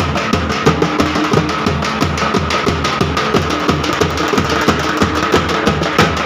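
A group of large double-headed bass drums beaten together in a fast, loud, continuous rhythm, with a steady high held tone sounding above the drumming.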